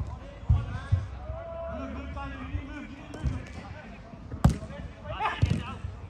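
A football being kicked on an artificial pitch: a handful of dull thuds a second or so apart, the loudest and sharpest smack about four and a half seconds in, with players shouting between the kicks.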